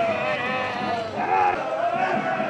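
Several people calling out together in high, wavering voices, overlapping without a break.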